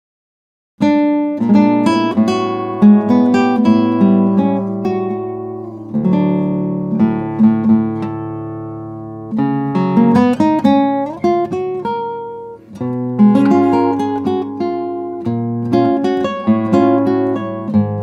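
A 1997 Jim Norris Smallman-style full-scale classical guitar, cedar top with Brazilian rosewood back and sides, played fingerstyle on nylon strings. A melodic solo piece starts about a second in, with one chord left to ring out and fade for about three seconds midway.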